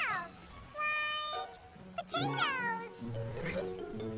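Cartoon soundtrack: background music with short, squeaky, voice-like sounds. Some of them fall in pitch, one at the very start and another about two seconds in.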